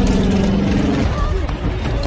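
Film sound of a four-engine turboprop cargo plane diving out of control: a loud low rumble of engines and rushing air, with a steady pitched drone that cuts out about a second in.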